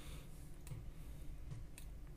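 A few faint computer mouse clicks over a low, steady room hum.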